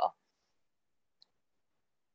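A woman's voice cuts off at the start, then dead silence on a video-call line, broken once by a faint short click about a second in.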